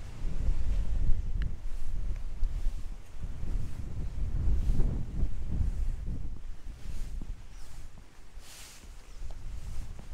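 Wind buffeting the microphone in uneven gusts, a low rumble that swells and eases, with a short hiss near the end.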